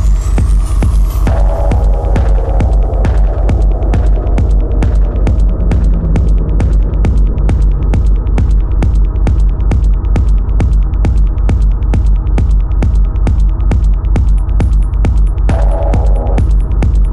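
Techno music: a deep, steady throbbing bass under a fast, even run of hi-hat ticks. A high rising sweep tops out about a second in and gives way to synth tones.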